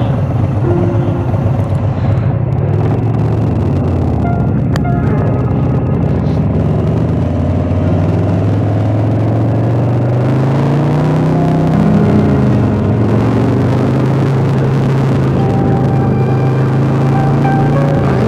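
Harley-Davidson motorcycle engine running under way; a little past the middle it rises in pitch as it accelerates, drops as it shifts up, then holds a steady pitch.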